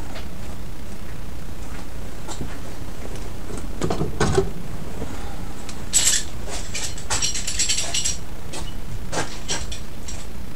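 Metal tools and parts clinking and rattling as they are rummaged through and handled, with scattered clicks, a heavier knock about four seconds in, and a run of bright metallic clinks a little past the middle, over a steady low background hum.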